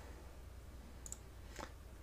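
Two faint clicks, one about a second in and another about half a second later, over a steady low room hum: a computer mouse clicking.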